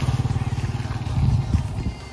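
Motorcycle engine passing close by at low speed and riding away, its low, pulsing exhaust note fading near the end.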